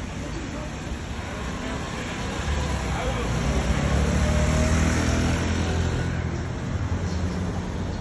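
A motorbike passing along a city street over steady traffic noise: its engine hum grows to its loudest about halfway through, then fades.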